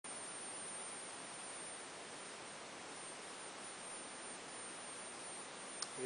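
Homemade joule ringer lamp running, its transformer hand-wound on a CRT monitor's ferrite yoke: a steady hiss with a faint, constant high-pitched ringing tone. A small click near the end.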